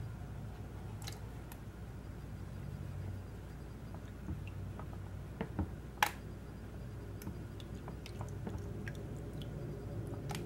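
Green plastic gold pans being handled in a tub of water: faint scattered ticks, knocks and small wet sounds over a low steady hum, the sharpest knock about six seconds in.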